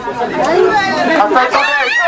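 Speech only: a woman talking through a handheld megaphone.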